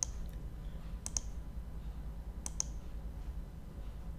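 Computer mouse clicking three times, each click a pair of quick ticks, over a low steady hum.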